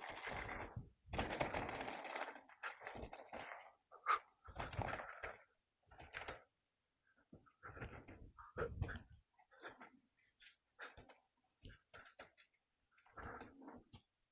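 Mountain bike rattling and clattering as it is ridden over a dirt jump trail, its chain and parts jingling and its tyres scrubbing on dirt in irregular bursts, with brief lulls.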